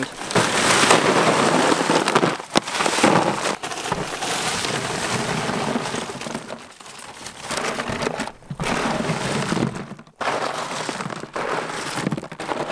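Red lava rocks pouring from a plastic bag into a bin, a continuous clatter and crunch of rock on rock. There are short pauses about seven and ten seconds in.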